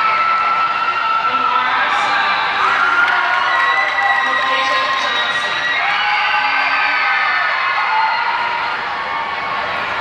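Arena crowd cheering and yelling, with long drawn-out shouts from several voices overlapping, as for graduates crossing the stage.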